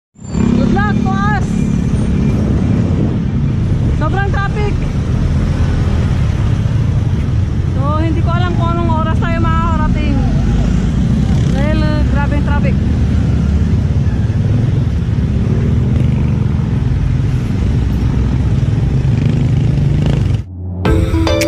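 Riding a bicycle through city traffic: a loud, steady low rumble of wind on the microphone mixed with motorcycle and car engines close by. A high, wavering voice cuts through briefly about a second in, at about four seconds, for a couple of seconds around eight to ten seconds, and once more near twelve seconds.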